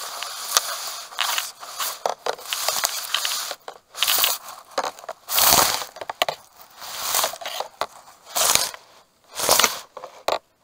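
Tall grass and reed stems rustling and crunching right against the camera as it is pushed through dense vegetation, in loud, irregular bursts about once a second.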